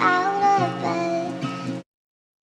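Background pop music with a gliding sung voice, cutting off suddenly just before the end.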